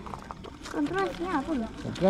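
Casual, untranscribed voices of a small group. In the second half, a high-pitched voice rises and falls in pitch, like an exclamation or sing-song remark.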